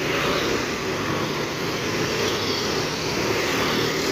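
Busy street traffic, with motorcycles and cars passing close by, making a steady, fairly loud rush of engine and tyre noise.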